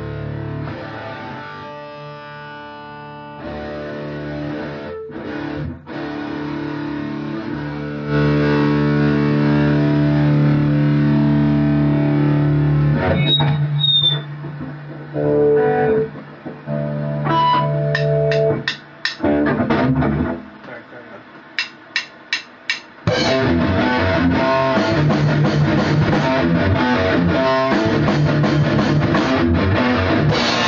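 Metalcore band jamming, led by distorted electric guitar: held chords at first, then a stretch of short, stop-start stabs with gaps, including four quick hits just before the whole band comes in hard and dense about two-thirds of the way through.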